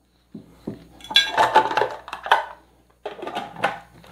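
Clear plastic lid of a food processor being handled and fitted onto its bowl: a run of plastic clatters and knocks, then a second shorter cluster about three seconds in.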